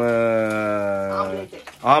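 A low-pitched voice holding one long drawn-out vowel for about a second and a half, its pitch sagging slightly, then breaking off before talk resumes near the end.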